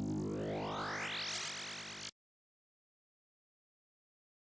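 Serum software synthesizer playing a rising sweep effect from a 'Feedback Madness' wavetable: a tone glides steadily upward in pitch over a dense, steady low drone, then cuts off suddenly about two seconds in.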